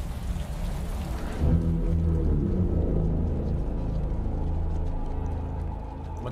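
Film trailer soundtrack: steady rain-like hiss under low, ominous music notes that come in about a second and a half in and hold.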